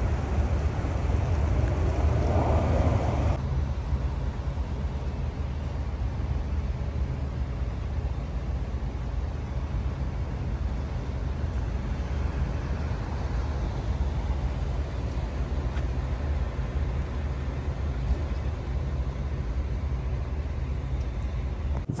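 Steady low rumble of a car running, heard from inside the cabin, with the higher hiss dropping away about three seconds in.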